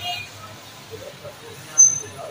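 Faint voices over low background noise in a shop, with a short, high-pitched chirp near the end.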